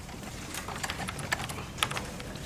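Typing on a computer keyboard: a run of irregular key clicks.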